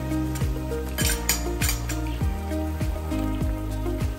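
Background music with a steady beat, with a few light clinks of kitchenware about a second in.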